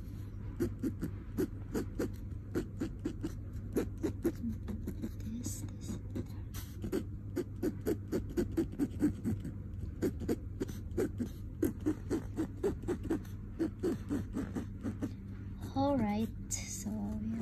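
Ballpoint pen scratching across a textured canvas surface in quick, short drawing strokes, several a second.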